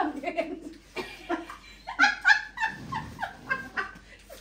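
Several women laughing and giggling in short bursts, with brief excited calls.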